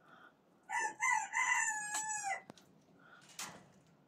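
A bantam rooster crowing once: a few short opening notes and then a long held note that drops in pitch at its end, about two seconds in all. A short knock follows near the end.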